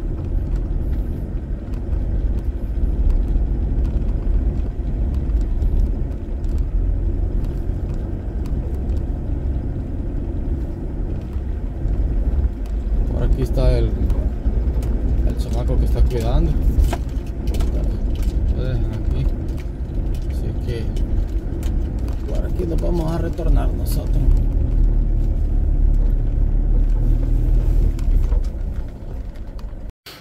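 Low cabin rumble of a car's engine and tyres as it drives slowly over a rough dirt road, with faint voice sounds now and then. The rumble drops away just before the end.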